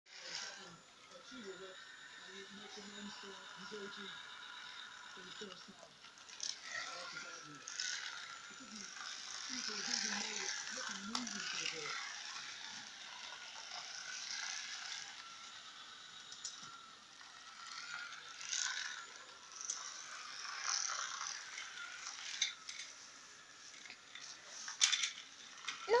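A small battery-powered toy car's motor whirring with a plastic rattle as it runs along a flexible plastic track, getting louder and fainter as it moves nearer and farther.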